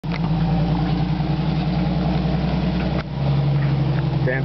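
Jeep engine running steadily at low revs. About three seconds in the sound breaks off sharply and comes back at a lower, steady pitch.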